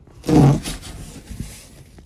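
Cardboard shipping box being handled: a loud, rough scraping rasp of cardboard about a quarter second in, lasting about half a second, then quieter cardboard rustling that fades out.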